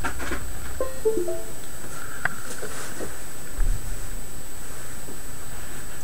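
Windows 10 device-connected chime: a few short notes about a second in as the USB microphone is plugged into the PC. Handling clicks and a low thump come from the plugging-in.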